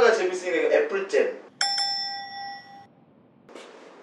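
A single bright bell chime, struck once and ringing for about a second before it fades out.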